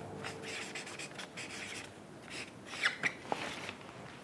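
Felt-tip marker writing on flip-chart paper, a few faint scratchy strokes, followed by a couple of small clicks about three seconds in.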